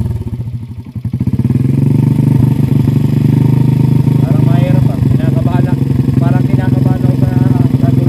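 Small motorcycle engine running steadily at idle, with a brief dip about a second in.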